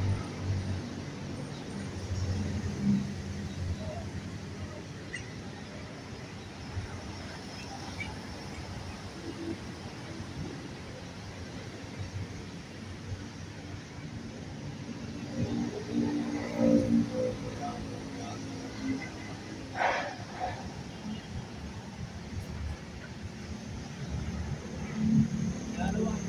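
Steady outdoor background noise with indistinct voices at moments, and a short sharp sound about twenty seconds in.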